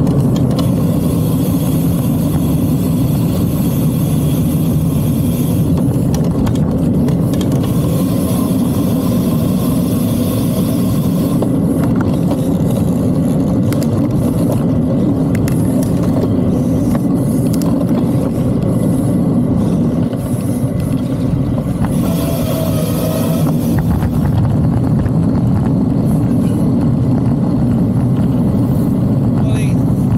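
Steady wind rush on the microphone and tyre noise from a road bike riding along a street, with a short tone about two-thirds of the way through.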